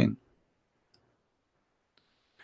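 A man's speech trails off, then a pause of room quiet with a single faint click about a second in.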